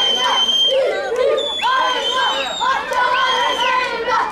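A group of children shouting and chanting in unison: three long, high, drawn-out cries, over crowd chatter.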